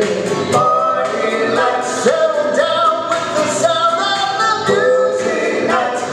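Male doo-wop vocal group singing in close harmony over a backing track with a steady beat of about four ticks a second.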